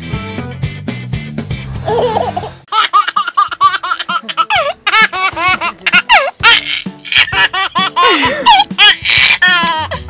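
A short music jingle, then from about three seconds in a baby laughing hard, many quick high laughs in a row, each rising and falling in pitch, as a goat mouths at his hand.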